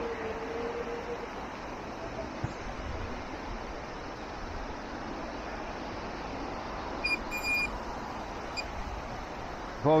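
Handheld metal-detecting pinpointer probe beeping with a high-pitched tone about seven seconds in, a few short beeps in quick succession and one more brief beep a second later, as it homes in on a target in a freshly dug hole. Steady outdoor background noise throughout, with a low wavering tone in the first second.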